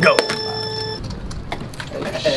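A steady electronic beep held for about a second, starting right on the word 'go' and cutting off suddenly, over a low background hum.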